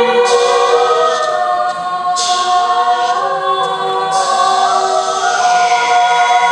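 Mixed-voice a cappella choir singing long, sustained chords in a Mandarin pop ballad, with soloists over the group. A short hiss that fades out comes in about every two seconds.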